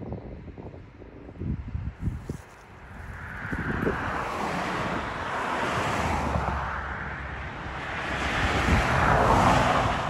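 Wind buffeting the microphone, then the rushing tyre noise of a pickup truck approaching on the highway, swelling for several seconds and loudest just before the end as it passes.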